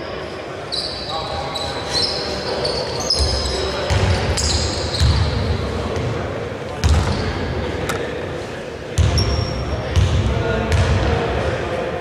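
A basketball bouncing on the court floor, a series of irregular thumps, with players' voices around it.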